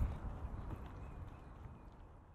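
Outdoor ambience with a low rumble and a few faint clops, fading out steadily.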